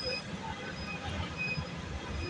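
Street traffic noise: a steady low rumble of passing vehicles, with faint voices in the background.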